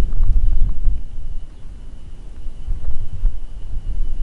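Wind buffeting the microphone: a loud, uneven low rumble that eases off a little past the middle.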